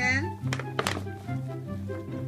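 Two sharp thumps, about half a second and just under a second in, from a cat thrashing with a paper gift bag stuck over its head, over background music; a short voiced cry sounds right at the start.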